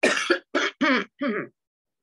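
A woman coughing: four short coughs in quick succession over about a second and a half.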